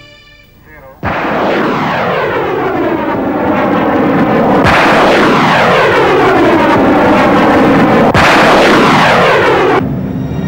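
Rocket motor roaring during a launch. It cuts in suddenly about a second in and stays loud, with a sweeping, falling whoosh that starts over twice.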